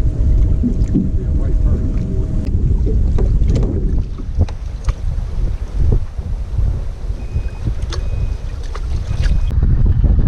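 Wind buffeting the microphone on an open bass boat, a heavy low rumble throughout. A steady hum stops about two and a half seconds in, scattered clicks and knocks come through, and three short high beeps sound near the end.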